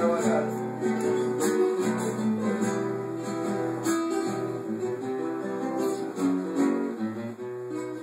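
Two nylon-string classical guitars playing an instrumental passage together, strummed chords under a picked melody line.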